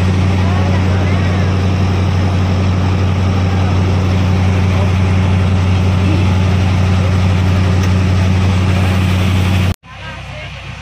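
Steady, loud drone of the engine of the boat the camera rides on, under way, with water rushing along the hull. It cuts off suddenly near the end.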